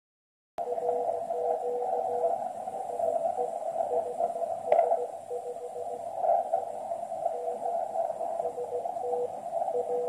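QRP Labs QCX transceiver's receiver audio: a Morse code (CW) signal, a thin tone keyed into dots and dashes, over a steady hiss of band noise in the narrow CW filter. A single sharp click about halfway through.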